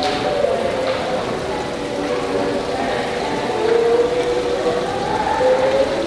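Water splashing steadily from an indoor rock waterfall fountain, with background music of held, slowly gliding notes over it.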